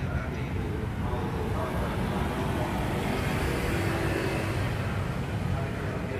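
Steady low rumble of motor vehicles and street traffic, with faint voices in the background.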